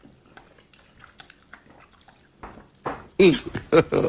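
Faint chewing and small wet mouth clicks of people eating fufu with egusi soup by hand, then a loud voiced "mm" in the last second.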